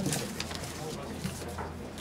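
Quiet, indistinct talk of people in a meeting room with a few small knocks, over a steady low electrical hum on the microphone line.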